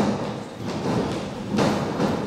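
Several people's bodies and feet thudding onto a wrestling ring's mat during a drop-and-get-up drill: a sharp thud right at the start and another burst of thuds about a second and a half in.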